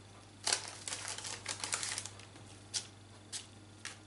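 Crisp, irregular crackles and clicks of baking paper rustling as hands press and fold pizza dough in a paper-lined metal tin: a quick run of them about a second in, then three single ones spaced apart near the end.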